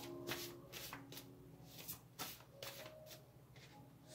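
A deck of oracle cards being shuffled by hand: a series of short, irregular rustling strokes.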